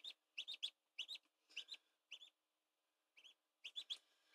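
Newly hatched duckling peeping faintly: short high peeps, mostly in quick groups of two or three, with a pause of about a second after the middle.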